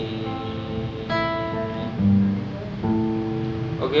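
Acoustic guitar fingerpicked, the notes of each chord plucked one after another and left ringing, with new notes coming about once a second.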